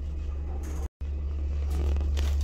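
Steady low rumble of a car heard from inside the cabin while driving, broken by a brief dropout about a second in.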